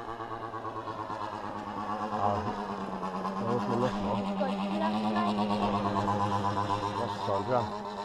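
The two-stroke 45cc chainsaw engine of a model airplane buzzing steadily in flight, its pitch rising a little toward the middle and easing back. The engine is running on a mount that is working loose, with three of its four screws gone.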